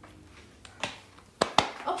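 Three sharp knocks, the first about a second in and two more close together about half a second later.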